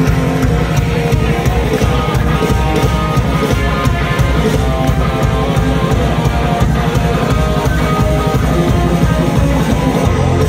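Live rock band playing an instrumental passage with no vocals: electric guitars, bass and drum kit, loud and continuous, heard from within a concert crowd.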